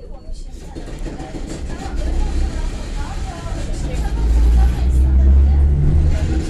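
EN57 electric multiple unit pulling away, heard from inside the carriage: a low rumble from its traction motors and running gear grows steadily louder as it gathers speed.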